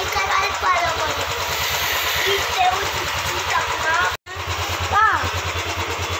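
Motorcycle engine idling, a steady low pulse under voices, with a brief cut-out about four seconds in.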